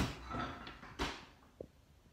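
Two knocks about a second apart, the first louder, with a faint rattle between them and a small tap after.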